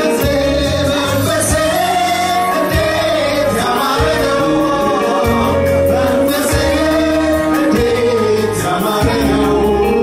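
Live gospel worship song: a man and several women singing together into microphones over electronic keyboard accompaniment and a steady beat.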